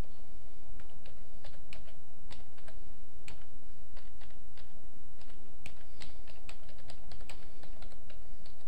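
Typing on a computer keyboard: irregular keystroke clicks, a few per second, with short pauses, over a steady low hum.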